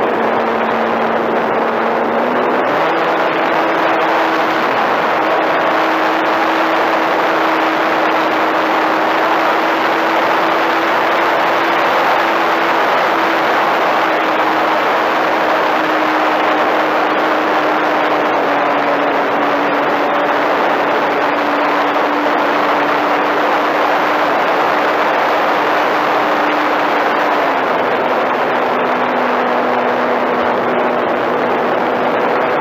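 Electric motor and propeller of an RC model airplane in flight: a steady hum with a loud hiss of rushing air. The pitch steps up a couple of seconds in as the throttle opens, eases slowly down, and drops back to the lower note near the end.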